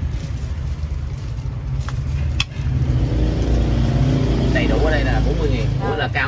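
A motorbike engine running close by, growing louder about halfway through. A sharp click comes just before it swells, and voices talk over it near the end.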